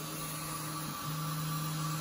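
Large-format 3D printer running, a steady low hum that drops out briefly about a second in and comes back slightly stronger.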